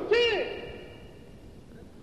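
A man's amplified voice gives one short call with a falling pitch, and its ring through the public-address system dies away over about a second.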